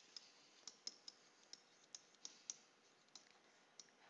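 Faint, irregularly spaced clicks of a stylus tip tapping on a tablet screen during handwriting, about a dozen of them.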